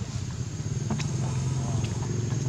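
A motor vehicle engine hums steadily and grows slightly louder, with a couple of sharp clicks.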